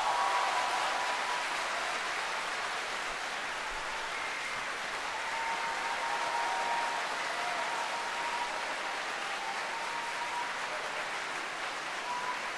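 Audience applauding steadily in a large concert hall.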